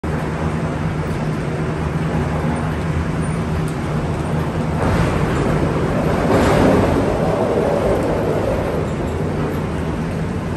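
Gondola cable car station machinery running, with a steady low hum. About five seconds in, a rolling rumble builds as a cabin comes through the station on its wheels and rail. It is loudest around six and a half seconds, then eases back.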